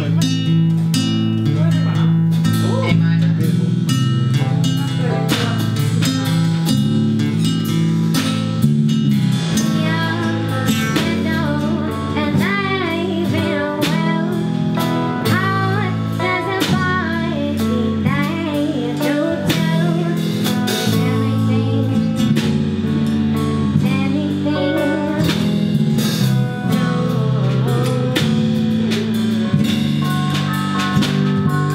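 Live acoustic singer-songwriter style song: acoustic guitar with a singing voice over held low chords, starting right at the beginning.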